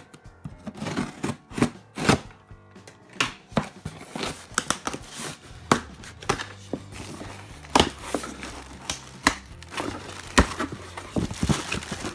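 Scissors snipping through packing tape on a cardboard shipping box, then the cardboard being pried and torn open: an irregular run of sharp clicks, rips and rustles. Near the end a plastic bag crinkles as the contents are lifted out. Background music plays underneath.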